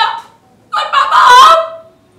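A woman wailing as she cries, acted for an audition: a short cry breaking off just after the start, then a longer, high, strained wail of about a second in the middle.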